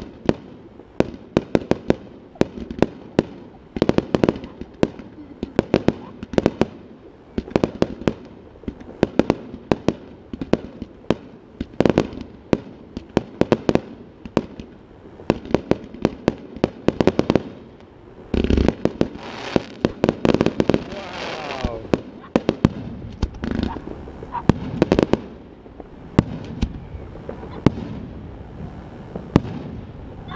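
Fireworks display: aerial shells launching and bursting in a rapid, irregular string of sharp bangs, several a second at times, with a denser, hissing stretch about two-thirds of the way through.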